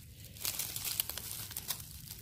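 Dry leaf litter and twigs crackling and rustling as a rotten log is rolled back into place and settled on the forest floor, a scattered run of small crackles.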